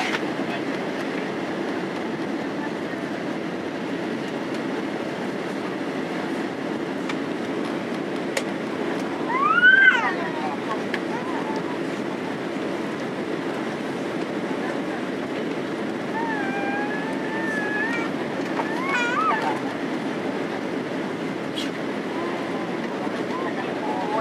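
Steady cabin noise of a Boeing 767-300 airliner on its landing approach, engines and airflow heard from a window seat. About ten seconds in, a brief rising-and-falling voice cuts through as the loudest moment, and a few shorter voice sounds follow later.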